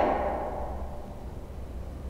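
A woman's voice trails off at the start, then a soft in-breath fades away within about a second as she lifts into cow pose, over a steady low hum.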